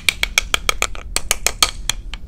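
A spoon and a spatula tapped together like rhythm sticks: a quick run of about a dozen sharp clacks, roughly six a second, stopping just before the end.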